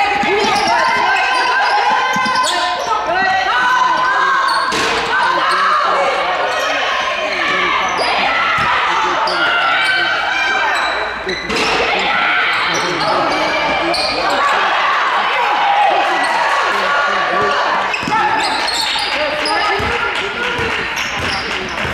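Basketball game in a gym: the ball bouncing on the hardwood, with a few sharp knocks, under a steady run of voices from players, benches and spectators.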